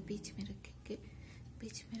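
Soft, half-whispered speech from a woman in short broken syllables, over a steady low hum.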